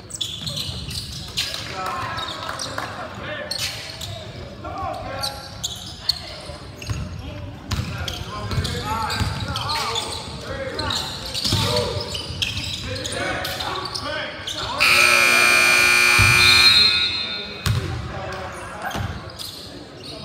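Basketball game sounds in a gym: the ball bouncing on the hardwood and players' and spectators' voices echoing in the hall. About 15 seconds in, a loud, steady horn sounds for about two seconds, most likely the gym's scoreboard horn stopping play.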